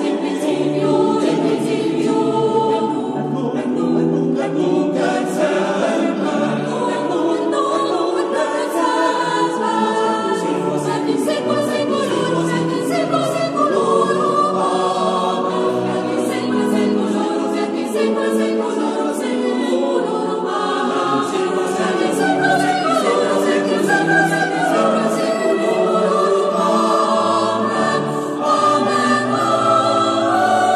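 Mixed choir singing a sacred choral piece, several voice parts holding sustained chords that move from note to note.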